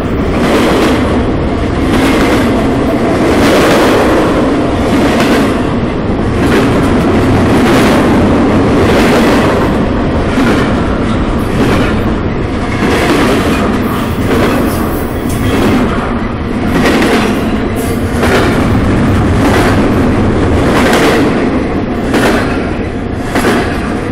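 Double-stack container well cars of a freight train rolling past close by: a loud, steady rumble of wheels on rail, with a burst of noise about once a second as each set of wheels passes.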